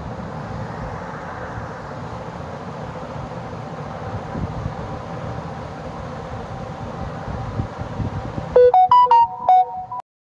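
Steady background noise, then near the end a smartphone notification tone: a quick melody of about seven short, bright electronic notes, announcing an incoming Instagram message.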